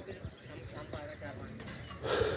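Faint background voices with a few light knocks.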